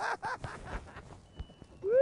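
A man's laughter trails off in short bursts. A quieter stretch follows, and near the end a loud, drawn-out vocal sound rises and begins to fall.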